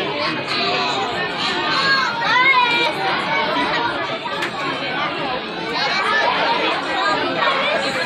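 Crowd chatter: many overlapping voices of children and adults talking at once in a large room.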